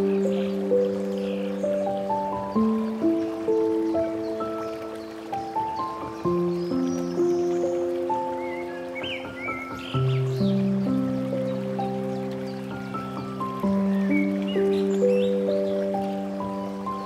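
Slow, gentle solo piano playing rising arpeggios over bass notes that change every few seconds. A few faint bird chirps are mixed in around the middle.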